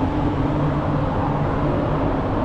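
Steady city traffic noise: a low rumble with an unbroken engine-like hum.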